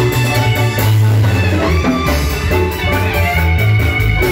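Live marimba band playing a dance tune, with many struck pitched notes over a strong, steady bass line and drums.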